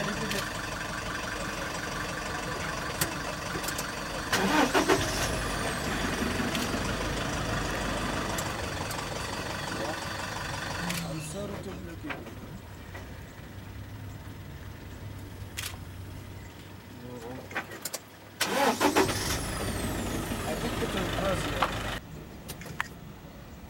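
Safari vehicle's engine idling, with two brief louder surges about four and nineteen seconds in. It goes quieter about eleven seconds in.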